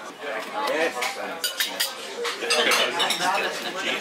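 Restaurant dining-room sounds: cutlery and dishes clinking again and again, with other diners' voices chattering underneath.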